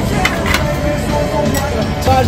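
Metal spatula tapping and scraping on the steel cold plate of a Thai rolled ice cream stand as the ice cream is scored into strips, with two sharp clicks about half a second in, over background music and voices.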